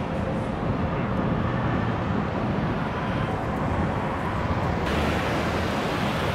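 Busy city street traffic on wet pavement, a steady rumble of engines and tyres. About five seconds in, the hiss of tyres on the wet road jumps up sharply as a box truck comes close.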